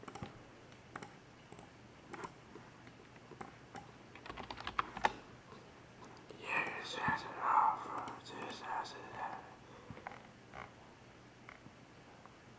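Scattered light clicks and taps, thickening into a quick run about four seconds in, with a short stretch of a faint voice in the middle.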